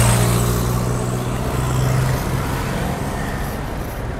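A motor vehicle's engine running with steady low tones and road hiss, loudest at the start and slowly fading.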